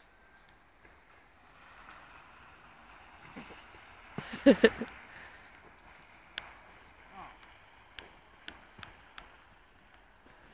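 Quiet open-air background with a brief burst of a person laughing about four seconds in, and a few sharp clicks in the second half.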